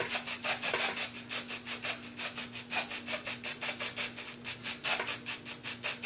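Aerosol can of lace tint spray being shaken hard, a quick even rasp of about five strokes a second, readying it to spray.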